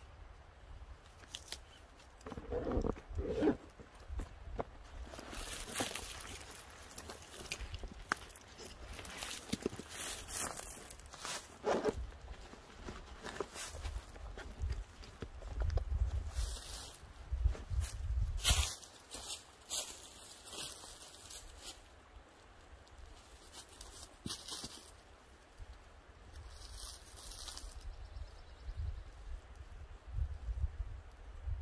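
Irregular rustling and scuffing of camping gear being handled: a cord tied around a tree trunk, a backpack and a nylon hammock stuff sack moved about, with footsteps in dry leaves.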